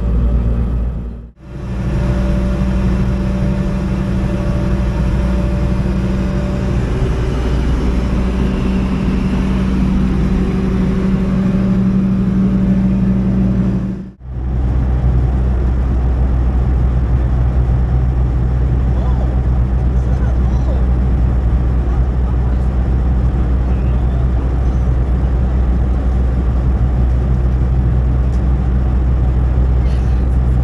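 Steady in-flight cabin noise of a Fokker 100 airliner: its rear-mounted Rolls-Royce Tay turbofans and the airflow make a loud, even drone with a steady low hum. The sound drops out briefly twice, about a second in and again near the middle.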